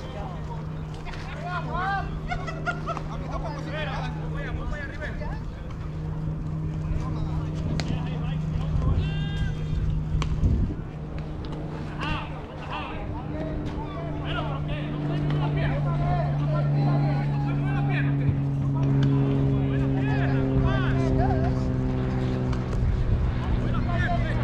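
A steady engine-like drone whose pitch drifts slowly, under scattered distant voices.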